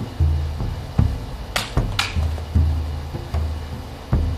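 Background music with a steady low drum beat. A little after one and a half seconds in come two sharp slicing swishes about half a second apart: an LK Chen Grand Marshal jian cutting through a rolled mat target.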